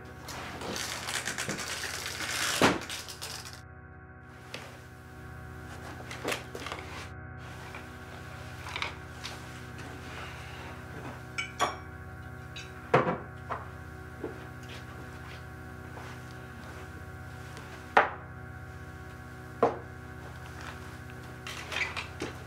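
Glasses and a bottle clinking and knocking as drinks are poured and set down: about a dozen sharp separate hits over a quiet, steady music underscore. In the first three seconds there is a denser rustling stretch ending in a louder knock as a door is opened.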